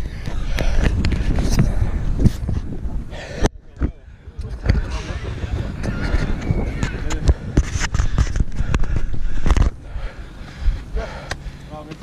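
Rumble and knocks of an action camera being handled and jostled as it is carried about, with many sharp knocks and thuds; the noise drops briefly a few seconds in and eases off near the end. Voices carry in the background.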